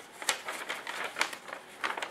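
Small handling sounds of a metal plate and a paper drawing sheet being moved by hand on a workbench: a few light, scattered clicks and taps with soft paper rustle.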